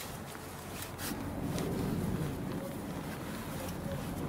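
Stock scissor jack being cranked up by its rod handle, giving faint scrapes and clicks, over a low hum that grows a little louder about a second in.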